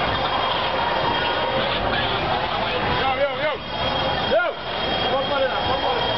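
Street protest crowd: many voices shouting at once over a steady background din, with two loud single shouts about three and four and a half seconds in.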